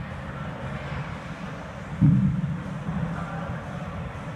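Steady low background rumble of a large gym. About two seconds in comes one dull, low thump as the BOSU balance trainer is handled on the turf.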